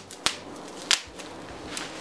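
Plastic bubble-wrap packaging handled in the hands, with two sharp clicks, one about a quarter second in and one near the one-second mark.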